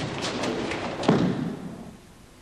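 A judoka's body hitting the tatami mat in a throw, one heavy thud about a second in that dies away over half a second, after some brief scuffing of feet on the mat.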